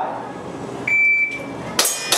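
Electronic shot timer's start beep, a single high steady tone about a second in, then the first shot from a gas airsoft pistol near the end as the stage string begins.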